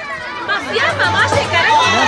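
Crowd chatter: several voices talking over one another, with dance music lower underneath after it drops away just before.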